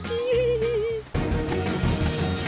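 Background music: a wavering, vibrato-laden held note, like a yodelled or sung line, that breaks off suddenly about a second in, after which a different, denser passage of the music carries on.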